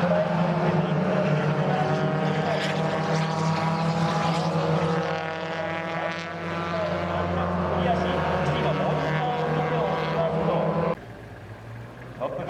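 Mazda Roadster race cars' engines running hard as a string of cars passes, their notes rising and falling as each goes by. The sound drops off suddenly about a second before the end.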